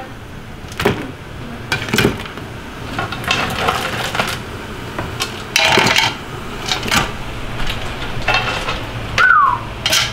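Spider crab clusters tossed by hand, a few at a time, into a large aluminum stockpot of boiling water: irregular clatters of shell against the pot and splashes about every second, over a steady low hum. A short falling squeak comes near the end.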